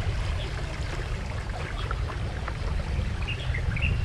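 Small tour boat under way on a calm canal: a steady low rumble with water rushing and splashing along the hull. A few brief high chirps come near the end.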